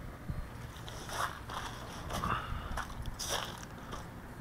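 Faint, irregular scuffs and rustles, five or so short ones, of a person walking and handling a small racing quadcopter whose motors are stopped.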